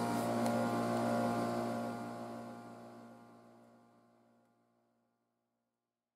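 Nespresso capsule coffee machine's pump running with a steady hum as it brews into the cup, fading out to silence a little over three seconds in.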